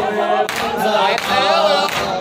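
Men chanting a noha, a Shia mourning lament, together in a wavering unaccompanied chorus, with the lead reciter's voice through a microphone. Faint thumps of chest-beating (matam) keep time about once a second.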